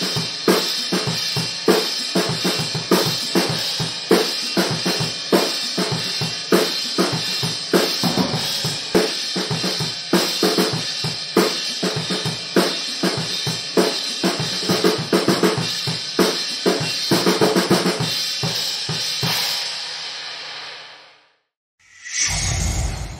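A Yamaha drum kit with Sabian cymbals played to a steady beat: kick, snare and crashing cymbals. Near the end the playing stops and the cymbals ring out and fade.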